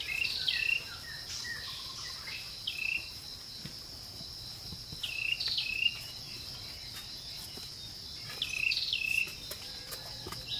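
Insects trilling steadily and high in the background, with a bird calling in short phrases of gliding notes four times: at the start, about three seconds in, around five to six seconds, and near nine seconds.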